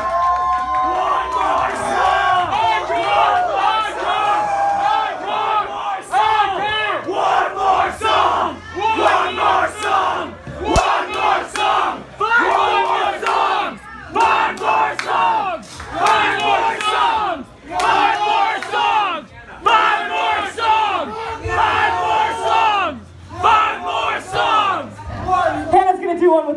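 Crowd of many voices shouting and yelling in a loud, continuous stretch between songs, with no instruments playing and a low steady hum underneath.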